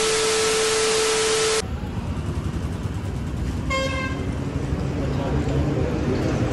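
Television static hiss with a steady beep, the sound of a broken-signal glitch effect, cutting off suddenly about one and a half seconds in. Then roadside background noise, with a short vehicle horn toot about four seconds in.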